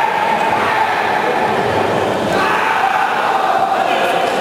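Crowd of spectators shouting and cheering without a break, with voices calling out over it.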